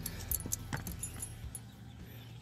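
A few scattered light metallic clicks and clinks from metal parts being handled, over a faint steady low hum.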